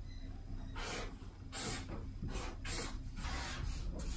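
Felt-tip marker writing on a sheet of paper: a run of short, scratchy strokes.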